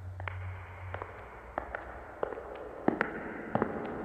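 Crackling at the start of the song's track: irregular sharp clicks, a few a second, over a soft hiss and a low steady hum.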